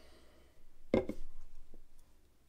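A tall aluminium beer can set down on a wooden table: one sharp knock about a second in, followed by a softer tap.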